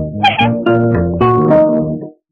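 Film background music: a light tune of plucked-string notes over a bass line, moving to a new note about every half second, with a short wavering high sound a quarter second in.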